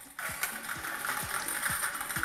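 Hand-turned clear plastic lottery ball drum being worked to draw a ball, its mechanism clicking about four times a second over the rattle of the balls tumbling inside.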